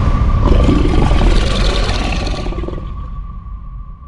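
Cinematic sound effect for an animated title: a deep rumble with a rushing noise that hits suddenly and slowly fades away, with a steady high tone held underneath until it cuts off near the end.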